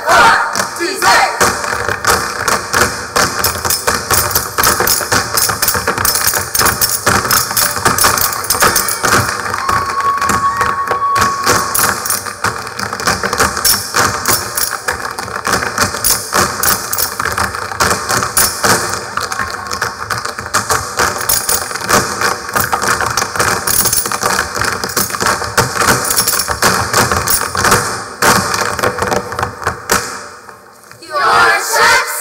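Tap shoes of a whole troupe striking a stage floor in fast, dense unison rhythms over loud recorded music.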